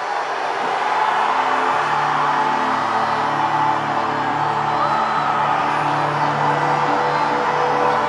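Music with long sustained chords, fading in and reaching full level about a second in.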